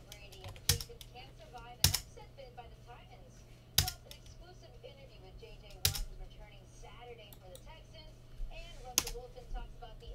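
Computer keyboard keys pressed one at a time: five sharp clicks spaced one to three seconds apart, over a steady low hum.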